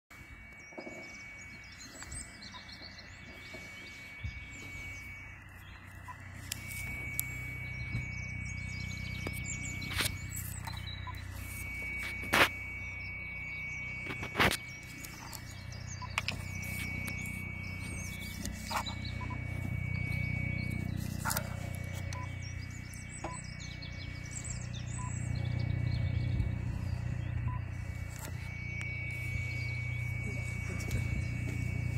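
Birds chirping over a steady high-pitched tone and a low hum that swells and fades, broken by a few sharp clicks, three of them much louder than the rest.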